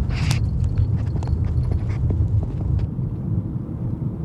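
Car driving on an unpaved dirt road, heard from inside the cabin: a steady low rumble of tyres and road noise, with scattered small clicks of grit and stones under the tyres.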